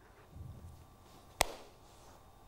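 Quiet room tone with a single sharp click or knock about one and a half seconds in.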